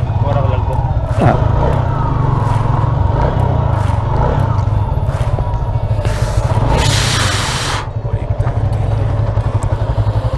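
Motorcycle engine running steadily as it is ridden slowly, with a low rumble of wind on the microphone. A hiss lasting about a second comes about seven seconds in.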